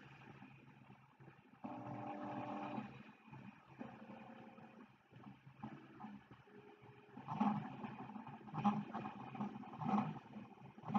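Prusa i3 MK3S 3D printer printing: its stepper motors whine as the print head moves, the pitch holding steady for a second or so and then jumping to a new note with each change of move. From about seven seconds in, the moves turn short and quick, giving louder pulses about once or twice a second.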